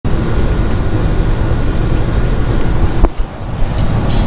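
Road and engine noise inside a vehicle's cab at highway speed: a loud, steady low rumble. A sharp knock comes about three seconds in, after which the rumble is briefly quieter.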